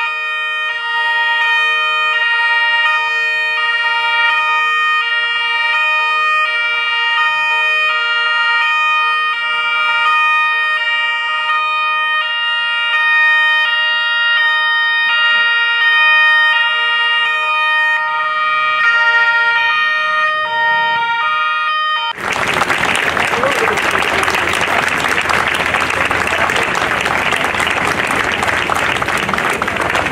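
Two-tone sirens of several police patrol cars and motorcycles sounding together, each switching steadily between a high and a low note, out of step with one another. About 22 seconds in they cut off suddenly and loud applause takes over.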